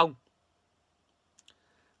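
A man's spoken word ends, then near silence broken by two faint short clicks about a second and a half in.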